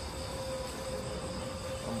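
Steady chorus of night insects over a constant low hum.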